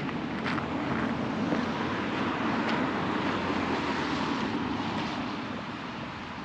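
Steady rumble of passing road traffic, easing off near the end, with a couple of footsteps on a gravel path.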